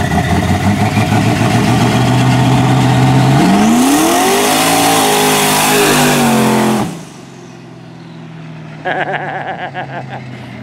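Twin-turbo S10 pickup's carbureted engine running steadily, then accelerating hard past, its pitch climbing over about a second and a half and holding high with a loud rush of air and exhaust; the sound cuts off suddenly about seven seconds in, leaving a quieter engine note. It pulls cleanly at high rpm with no break-up, which the builder calls flawless.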